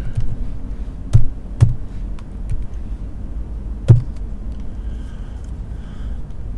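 Computer keyboard keystrokes: a handful of irregular clicks, three of them louder, over a steady low hum.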